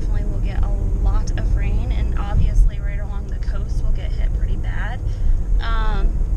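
Steady road and engine noise inside the cabin of a moving car, a constant low rumble, with voices talking over it on and off.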